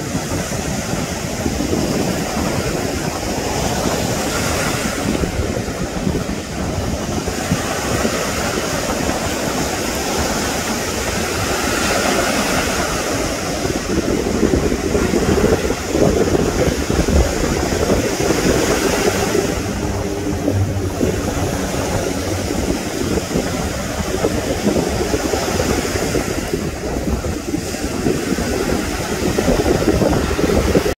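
Surf breaking and washing ashore, a steady roar of waves, with wind buffeting the microphone.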